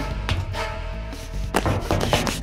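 Tense film background score with held tones, over a few sharp knocks, a quick pair about one and a half seconds in and another just before the end.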